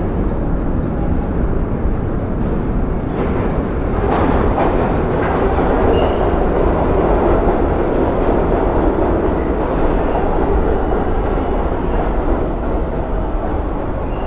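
Bombardier-built R62A New York City subway train pulling into an underground station: a loud, steady rumble of wheels on rails that builds a few seconds in, stays loud through the middle, and eases slightly as the train slows.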